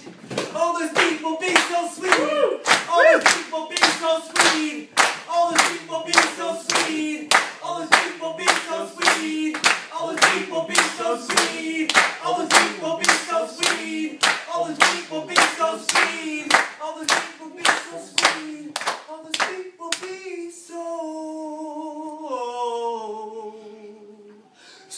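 Hands clapping a steady beat, about two claps a second, under a held, wordless sung note from a live performance. Near the end the clapping stops and the voice steps down in pitch.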